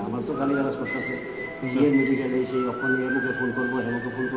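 A man speaking, with a thin, high, steady whistling tone behind his voice: it holds for about a second and a half, then comes back a little lower and steps up slightly near the end.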